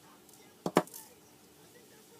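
Two sharp taps in quick succession about two-thirds of a second in, from a small plastic glitter container being handled on the craft table as the chunky glitter is dumped out.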